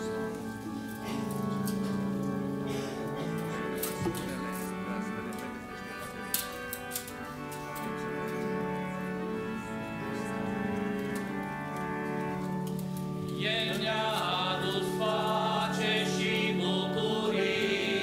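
A hymn sung by a church congregation and choir in long held notes, the sound swelling louder and fuller about three-quarters of the way through.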